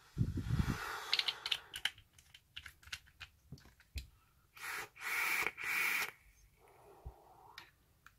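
Small clicks and taps of an e-liquid bottle and a rebuildable dripping atomizer being handled while the coil is dripped. About halfway through come three short airy hisses, then a softer one near the end: breath drawn through the vape and blown out as vapour.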